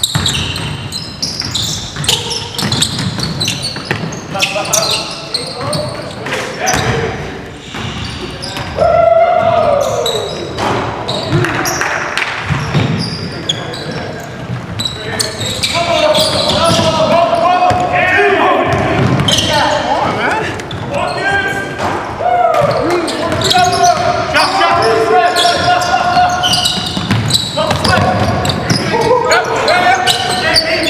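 Basketballs bouncing on a hardwood gym floor during a game, the dribbles and impacts mixed with players' shouts and voices throughout.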